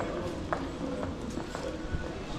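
Shoes clicking on a hard stone floor in a vaulted covered bazaar, a few irregular footsteps, over a murmur of shoppers' voices.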